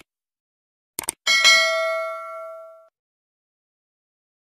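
Two quick clicks, then a single bright bell ding that rings out and fades over about a second and a half: the stock sound effect of a YouTube subscribe button and notification bell being clicked.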